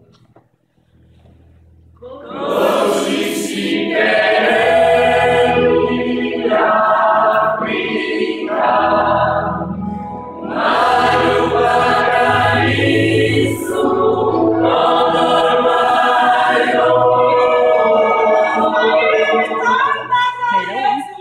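Gospel choir singing in full voice, entering about two seconds in after a near-quiet start and going on in phrases. Low sustained bass notes sound beneath the voices.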